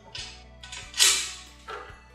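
Metal tube frame clinking and scraping against a metal rod as it is slid into place, a few short knocks with the loudest about a second in, over background music.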